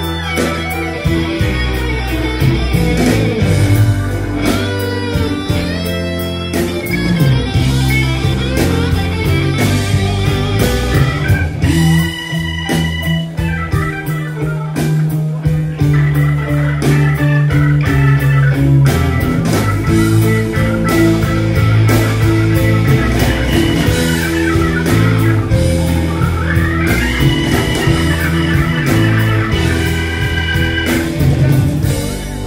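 Live blues-rock band playing an instrumental break: electric guitar and organ soloing over bass and drums, with long held and bent notes.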